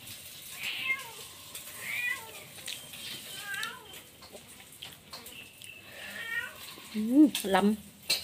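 Domestic cat meowing repeatedly: about five short, high-pitched meows roughly a second apart.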